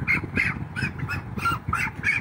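A broiler chicken squawking in a quick series of short calls, about four a second, as it is grabbed and lifted by hand.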